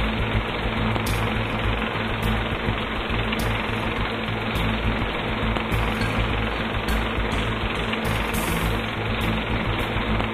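Old film projector sound effect: a steady, rapid mechanical rattle over a low hum, with scattered crackling pops.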